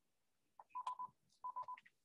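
Faint telephone keypad beeps: two quick runs of three short, equal-pitched tones, keys pressed on a phone that is playing an automated voice call.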